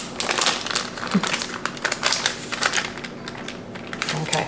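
Parchment paper crinkling and crackling under a silicone spatula as soft sweet potato dough is spread and smoothed on a baking sheet: a dense, irregular run of small crackles.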